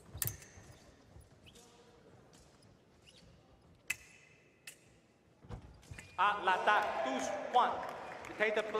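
A few sharp, ringing clicks of sabre blades meeting and a heavy footfall on the piste during a fencing exchange. From about six seconds in, loud shouting follows the touch.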